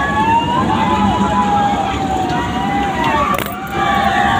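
Fairground ride noise: many overlapping tones that rise and fall, over a steady din, with a sharp click a little past three seconds in.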